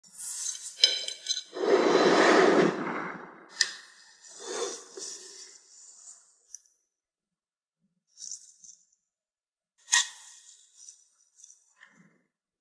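Handling sounds: a few sharp clinks and clatters like dishes being set down and knocked. There is a louder, longer rustling noise of about a second and a half near the start, then scattered quieter clinks with short silences between.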